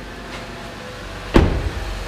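A car door shut with a single loud thud about a second and a half in, over a steady low hum.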